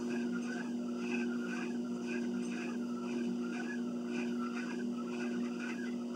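Treadmill motor running with a steady hum, under a higher whine that wavers about twice a second in step with the walking on the belt.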